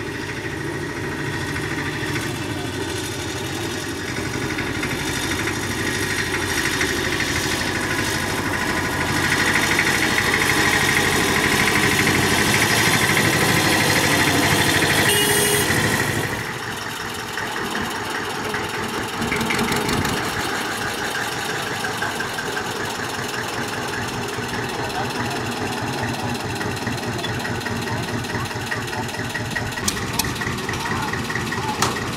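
Small Diema narrow-gauge diesel locomotive engine running, growing louder as it approaches. After a cut about halfway through, a diesel locomotive engine idles with an even beat.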